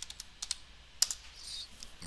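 About five separate keystrokes on a computer keyboard, typing in a short stock ticker symbol.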